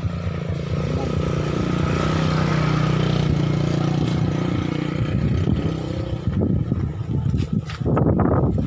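A motor vehicle engine, most like a passing motorcycle or car, running steadily: it grows louder to a peak two to three seconds in, then fades. Irregular low knocks come in near the end.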